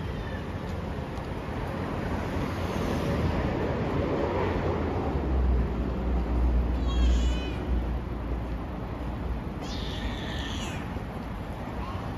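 Street ambience with a low rumble of traffic that swells in the middle. Two short high-pitched squealing calls stand out, one about seven seconds in and one about ten seconds in.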